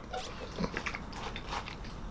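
Faint mouth sounds of a man sipping a drink through a metal straw: a few soft clicks and smacks as he drinks and then tastes it.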